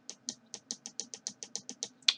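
A rapid, even run of small sharp clicks, about seven or eight a second, from the controls being clicked to step the digital microscope's on-screen menu down to its image comparison app.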